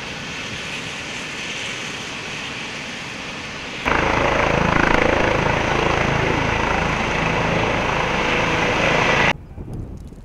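Trauma helicopter's rotor and turbine noise as it lifts off close by in a storm of dust. A steadier, quieter rushing sound for the first four seconds, then much louder until it cuts off abruptly near the end.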